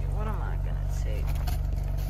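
A car engine idling with a low, steady hum. Reusable grocery bags rustle faintly as they are carried.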